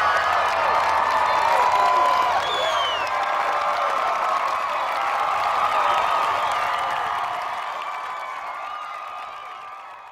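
Large crowd cheering, screaming and clapping, many voices overlapping, fading out over the last few seconds.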